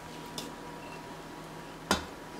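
Low room hiss with a faint tick about half a second in, then one sharp metallic clank near the end as a metal baking pan of sweet potato filling is set down on the stovetop.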